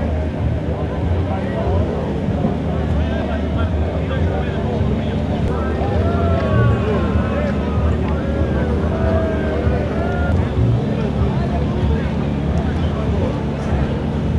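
A small boat's outboard motor running steadily, with voices of several people talking and calling out over it, busiest in the middle of the stretch.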